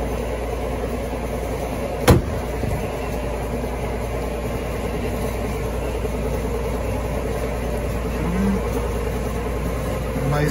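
Trunk lid of a Chrysler Stratus being closed, a single sharp bang about two seconds in, over a steady background hum.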